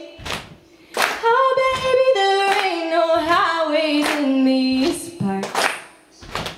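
A woman singing a wordless melody in long held notes that step and slide between pitches. Under it runs a steady beat of audience stomps and hand pats, about one a second.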